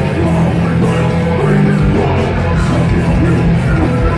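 Hardcore punk band playing live: electric guitars, bass guitar and drums, with the singer shouting vocals into the microphone.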